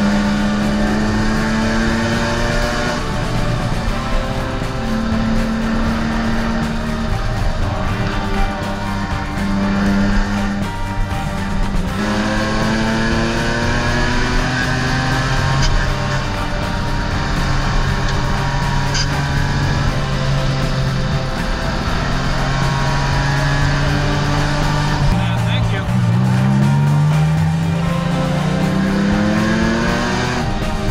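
Nissan 350Z's 3.5-litre V6 running under load while driving, its pitch climbing with the revs and dropping back several times, with music playing over it.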